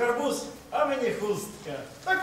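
Spoken stage dialogue: a voice speaking two short phrases, with no music.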